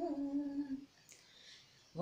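A woman singing unaccompanied holds one long sung note, which ends just under a second in; the voice then pauses for about a second before the next line.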